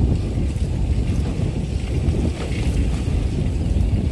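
Wind buffeting the microphone of a camera carried on a moving bicycle: a steady, low rumble.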